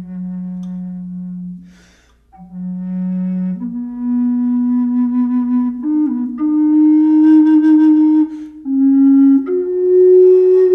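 Wooden side-blow bass flute in F# playing a slow melody of long, breathy, held low notes. A quick breath breaks it about two seconds in, and after that the notes step higher.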